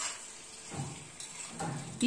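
Prawns frying in hot oil in a kadhai over a high flame: a steady sizzle as they are stirred with a metal spatula.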